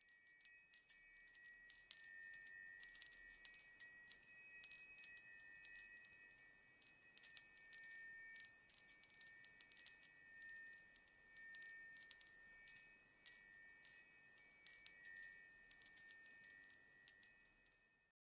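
High, tinkling chimes struck over and over in a steady shimmer, like a wind chime, fading out near the end.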